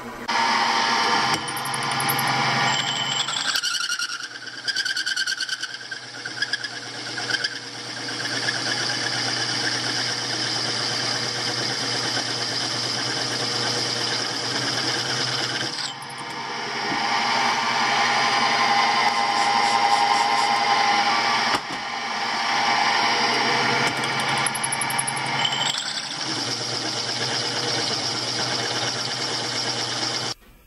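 A 1.5-inch hole saw in a milling machine spindle, run slowly in low gear, cutting through quarter-inch steel plate: a continuous grinding, scraping cut over the steady hum of the mill's motor. The cutting sound changes character abruptly a few seconds in and again about halfway through.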